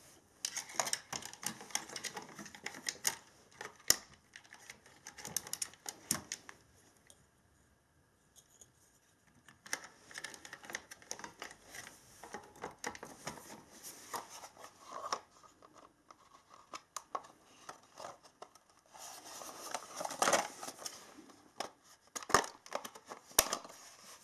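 Hard plastic charger casing and parts being handled and fitted together: irregular clicks, knocks and scrapes, with a pause of a couple of seconds about seven seconds in and a busier stretch of handling near the twenty-second mark.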